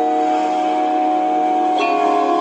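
Christmas-themed video intro jingle: a loud held chord of several steady tones that shifts to another chord near the end.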